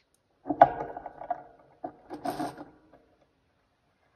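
Small ceramic toy teacups clinking against their ceramic saucers and the table as they are set down and arranged. There are two bursts of clinks, the first the loudest, each with a brief ringing.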